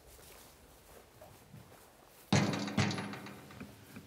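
Two hollow knocks on an aluminium diamond-plate tank, about half a second apart, the first ringing on briefly, after a couple of seconds of quiet.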